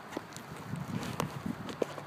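Footsteps: a few uneven short knocks, several a second, from someone walking while carrying the recording phone.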